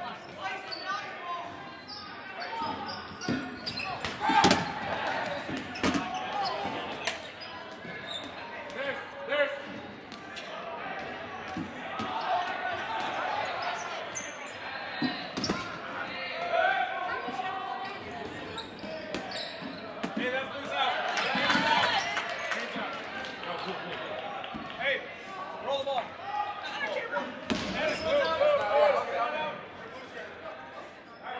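Dodgeballs smacking off players and the hardwood floor during a live dodgeball rally, several sharp impacts scattered through, with players' voices calling out throughout. The sounds ring in a large, echoing gymnasium.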